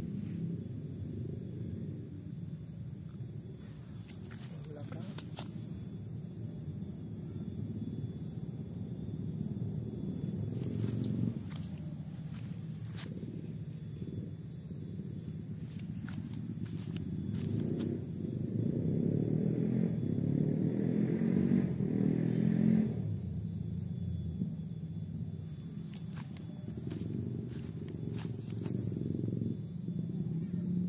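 A steady low rumble like a motor engine running, swelling louder for a few seconds about two-thirds of the way through, with a few faint clicks.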